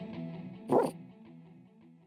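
The last chord of a children's song dies away. A little under a second in, a cartoon puppy gives a single short bark.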